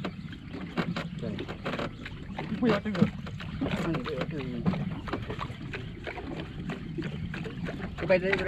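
Small boat afloat on the open sea: water against the hull with irregular knocks over a steady low hum, and indistinct voices in the middle.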